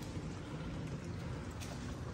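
Built-in dishwasher running mid-cycle: a faint, steady wash of water spraying inside the closed tub over a low hum.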